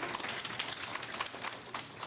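A seated audience clapping, a dense run of many hand claps at once, easing off slightly near the end.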